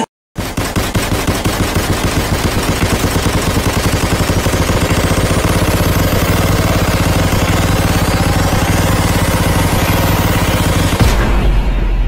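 Edit soundtrack of a rapid machine-gun-like run of sharp percussive hits over a held bass, with rising sweeps in the highs. It starts after a brief dropout and changes about a second before the end.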